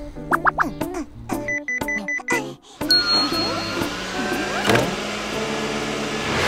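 Cartoon background music. About three seconds in, a short high beep and the steady electric whir of a robot vacuum cleaner join over the music.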